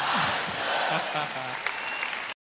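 Audience applauding after a live worship song, with scattered voices calling out among the crowd.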